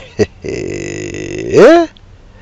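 A man's non-speech vocal sounds: a drawn-out, low, buzzy voiced sound lasting about a second, then a short, loud voiced sound that rises and falls in pitch, as he chuckles.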